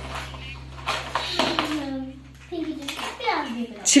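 Children talking quietly while small plastic toys clatter and click as they are rummaged through in a plastic storage bin, over a low steady hum.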